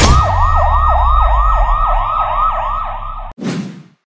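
Emergency-vehicle siren in a fast yelp, about three sweeps a second, over a low rumble. It cuts off abruptly just after three seconds and is followed by a short swoosh that falls in pitch.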